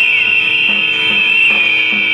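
A crowd of men whistling together, a loud, shrill, sustained whistle with single whistles sliding up and down over it.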